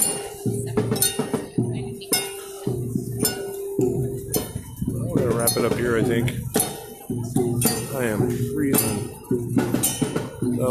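Live music: percussion struck about twice a second under a held tone, with voices singing from about five seconds in.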